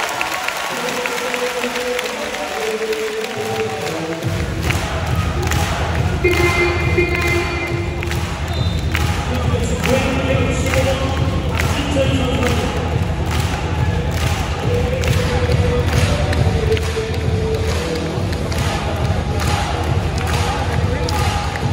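Arena sound-system music with a heavy bass beat that kicks in about four seconds in, over a large crowd's voices, with repeated sharp knocks or claps standing out.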